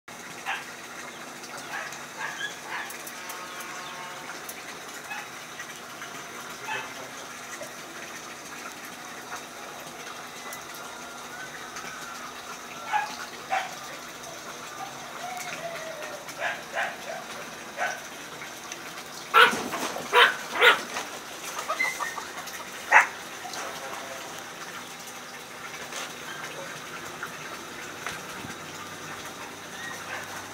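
Small dogs playing and wrestling, giving short yips now and then, with a quick run of four or five sharp, high barks about two-thirds of the way through and one more bark soon after.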